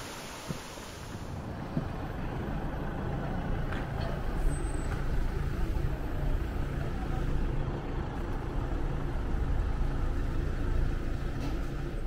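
Cable car machinery running with a steady low hum and rumble that slowly grows louder, as heard from inside the cabin.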